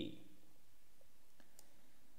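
Two faint computer mouse clicks about one and a half seconds in, over a low steady hiss.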